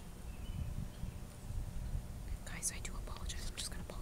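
A person whispering, starting about halfway through, over a steady low rumble.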